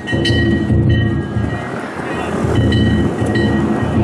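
Danjiri float festival music: a taiko drum beating over and over while metal hand gongs (kane) are struck repeatedly and keep ringing.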